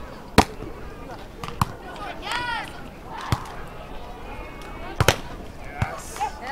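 A beach volleyball being struck by hand several times in a rally, each contact a sharp slap. The loudest is the serve, about half a second in. Further hits come about one and a half, three and a quarter, and five seconds in, with a player's short call between them.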